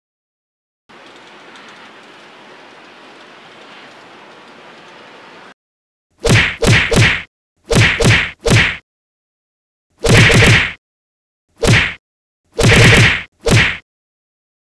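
Movie-style punch sound effects: about ten loud whacks in quick groups, starting about six seconds in, after a few seconds of faint hiss.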